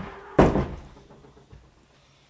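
A single loud thud about half a second in, fading quickly.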